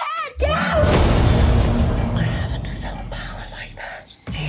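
A wavering high voice breaks off into a sudden loud cinematic impact about half a second in, a shattering crash with a deep rumbling tail that slowly fades.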